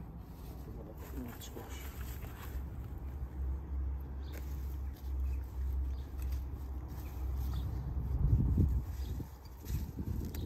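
Soft scrapes and rustles of gloved hands firming soil around a freshly planted squash seedling, over a steady low rumble that grows louder near the end.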